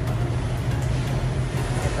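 Rice mill machinery running with a steady low hum.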